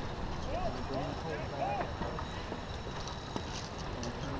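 Wind rumbling steadily on the microphone aboard a sailboat under way, with faint, quiet speech in the background.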